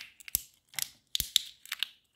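Small plastic toy surprise ball being worked open by fingers: a string of sharp plastic clicks and crackles, several a second, with short quiet gaps between.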